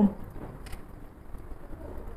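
A spoken word ends right at the start, then low, even background noise with a few faint soft clicks.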